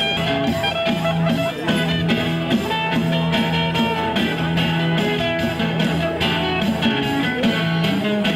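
Live band music: two guitars playing with a pair of congas struck by hand, keeping a steady beat.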